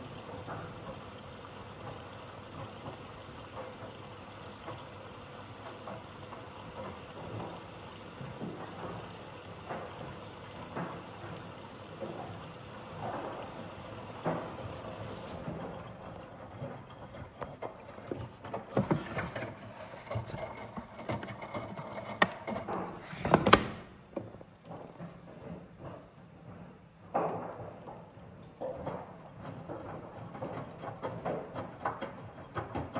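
Miele Professional PW 6065 Vario washing machine in its last rinse: water runs into the drum with a steady hiss that cuts off about halfway through. After that the drum turns, and the wet laundry sloshes and tumbles with several thumps, the loudest about three quarters of the way through.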